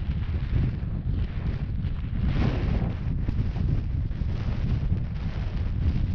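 Wind buffeting the microphone: a steady low rumble, with a stronger gust about two and a half seconds in.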